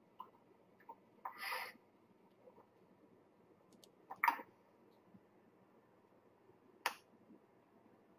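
Quiet room tone broken by a handful of short clicks: a brief rustle about a second and a half in, a sharper double click a little after four seconds, and one sharp click near the end.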